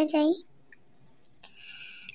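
A voice speaks briefly. It stops, and a few faint, sharp clicks of handling noise follow. Near the end a short, steady hiss sets in.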